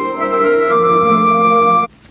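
AI-generated instrumental music from MusicGen, played back as a clip: held notes moving through changing chords, which stop abruptly near the end when playback is stopped.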